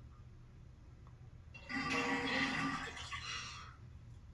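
Horror film soundtrack playing over a television: a low steady hum, then about a second and a half in a held, pitched tone that swells and fades over about two seconds.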